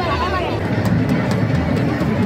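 Voices of a large packed crowd, with shouting. About half a second in, a dense low rumble with sharp percussive hits joins in, like music over the crowd.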